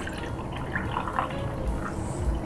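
Cold brew coffee concentrate pouring in a thin stream from a French press into a glass tumbler, a quiet, steady trickle into the glass.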